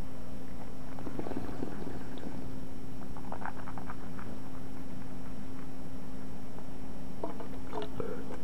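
A steady electrical hum and hiss, with faint wet mouth clicks of wine being swished in the mouth during tasting, in short clusters about a second in and around three and a half seconds in. More small clicks near the end as a stainless steel spit cup is lifted to the mouth.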